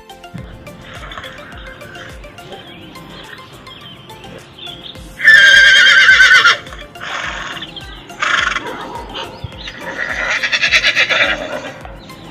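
Recorded horse whinnies played by Google Search's augmented-reality 3D horse. A loud, quavering whinny comes about five seconds in, shorter calls follow, and a second long whinny comes near the end, all over background music with a steady beat.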